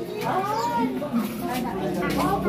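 People's voices, including a high-pitched voice that rises and falls in pitch.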